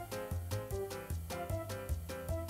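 Instrumental background music with a steady, regular beat, a bass line and pitched instrument notes.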